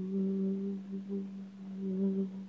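A cappella voices holding one long, steady note, the final note of the song.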